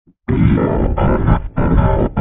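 Loud, heavily distorted, deep-pitched effects-processed audio. It starts about a quarter second in after a silence and is chopped into a stutter that repeats roughly every half second.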